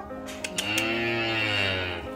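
A calf giving one long moo that starts about half a second in, rising and then falling in pitch, over soft background music.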